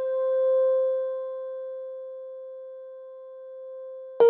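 Background film music: one long held keyboard or synth note that swells in the first half second and then slowly fades.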